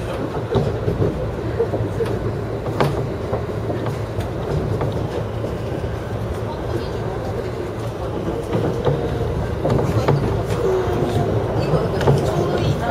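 E231 series electric commuter train running along the track, heard from inside the front car: a steady rumble of wheels on rail with occasional sharp clicks.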